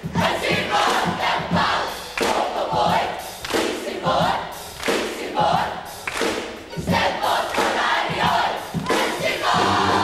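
A large youth choir shouting short phrases in unison, in bursts about once a second with gaps between, over hand clapping. Near the end a band with brass comes in with a steady held chord.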